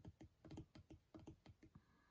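A run of faint, quick light clicks and taps, about six a second, from fingers handling the paper pages of a discbound planner; they stop shortly before the end.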